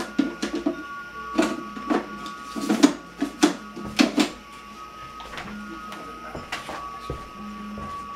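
Clacks and knocks of a lid being worked onto a glass aquarium tank, a quick run of clatters over the first four seconds or so, then a few scattered knocks. A faint steady high tone sits underneath.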